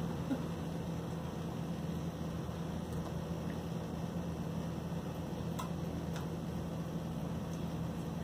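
Small electric water pump humming steadily while it fills the pipe and piezometer tubes, with the valve closed toward shutoff head.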